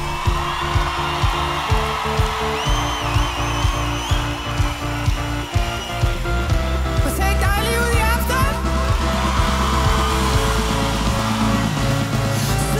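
Live electronic pop music from a band with drum kit and synthesizers: a steady kick-drum beat about two a second under held bass and synth notes, the beat easing off about halfway while the synth lines carry on.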